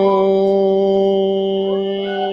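A man's steady, held humming "mmm" of Bhramari (humming-bee) pranayama on one low pitch, sounded on the out-breath and slowly fading, with flute music playing over it.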